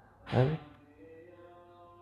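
A man's short murmured syllable, then a faint steady drone of several held tones.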